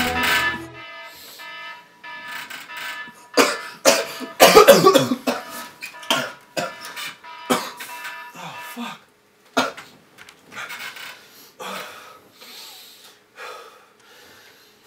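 A young man coughing and gasping for breath in a run of hard, separate fits, loudest about four to five seconds in, easing into shorter breaths. A faint steady high tone runs under the first half.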